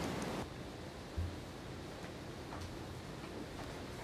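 Quiet courtroom microphone room tone with a faint steady hiss. There is one soft low thump a little over a second in, and a few faint clicks.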